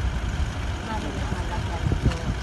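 Several people talking close by at a car window, over a steady low rumble.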